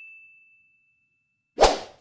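Sound effects of an animated like-and-subscribe end screen. A single high ding fades out over the first half second, then a short, sharp whoosh comes about a second and a half in and is the loudest sound.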